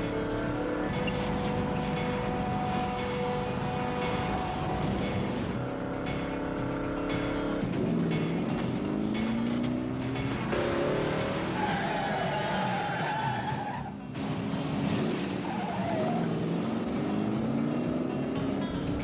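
Car-chase soundtrack: car engines running hard and tires skidding, mixed with background music. In the second half the engine pitch glides up and down, with a short drop-out about fourteen seconds in.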